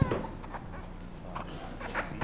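Council members sitting back down at their desks: a sharp knock right at the start, then faint scattered knocks and rustles over a low steady room hum.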